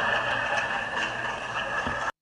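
Crowd applauding and cheering, a steady wash of clapping and voices.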